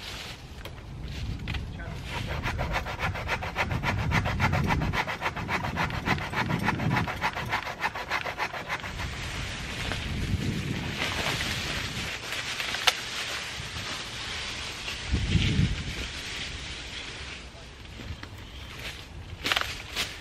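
A hand saw cutting dead oak wood: a rhythmic rasping of quick, even strokes through the first half. After that come rustling and handling of branches, a single sharp snap about two-thirds of the way in, and a low bump shortly after.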